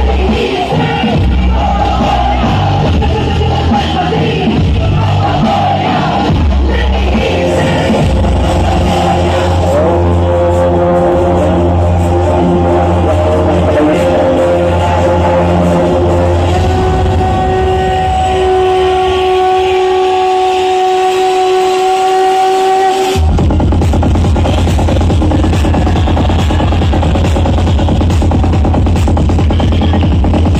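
Loud dance music. About 23 s in, a passage of held notes gives way abruptly to a fast electronic beat with a heavy pulsing bass.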